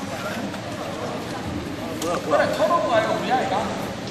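Indistinct voices calling out over the background noise of a sports hall, with a sharp knock about two seconds in.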